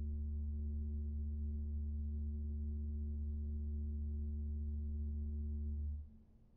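Nineteenth-century American romantic pipe organ holding a steady low chord, a deep pedal note under two quieter higher notes. The chord is released just before the end, and the sound falls away quickly into the church's reverberation.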